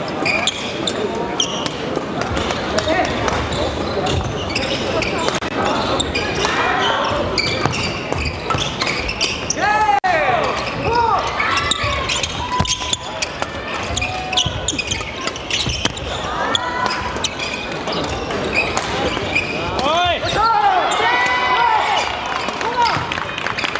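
Badminton doubles play on a wooden sports-hall floor: sharp racket hits on the shuttlecock and shoes squeaking on the court, with clusters of squeaks about ten seconds in and again near the end. Indistinct chatter from players and spectators carries on throughout, echoing in the large hall.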